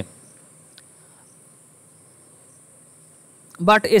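A faint, steady high-pitched hiss or whine in the background during a pause in speech, with a word spoken at the very start and another near the end.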